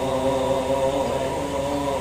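A man chanting a verse of the Bhagavata in a drawn-out, sung recitation, holding one long, steady note that ends near the end.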